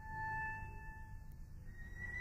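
Solo cello playing softly in its high register: a thin held note that fades away, then a higher held note entering near the end.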